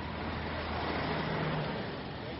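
Street traffic noise: a car passing by, swelling to its loudest a little past the middle and then fading, over a low steady hum.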